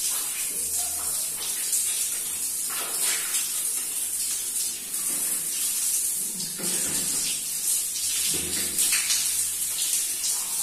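Water spraying and splashing in a small tiled shower as a man washes his hair and face, a steady hiss with a few brief splashes.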